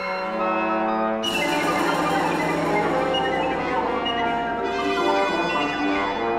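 Chamber ensemble of woodwinds and percussion playing held chords in a contemporary concert piece. About a second in, a loud percussion crash enters with a long bright shimmer over the held notes, fading a few seconds later.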